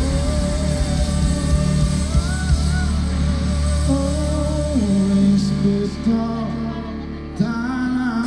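A live band playing on a concert stage, with held chords and a melodic line over a steady bass. It gets somewhat quieter about six and a half seconds in, then comes back in suddenly near the end.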